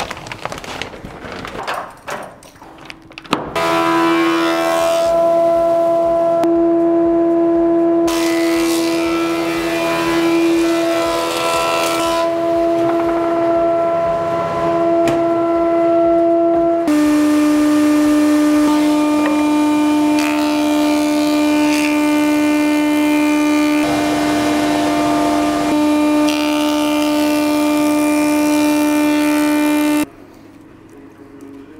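A wood planer and a workshop dust extractor running: a loud, steady machine hum with a strong even tone, with rougher cutting noise swelling and fading as boards are fed through the planer. A few knocks come first, the hum starts about three and a half seconds in, and its pitch steps down slightly about halfway through.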